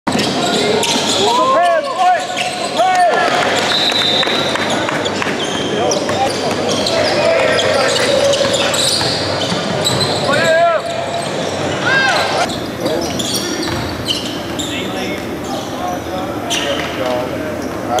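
Basketball game in an echoing gym: a basketball bouncing on the hardwood court, sneakers squeaking in short chirps several times, and a steady background of players and spectators talking and calling out.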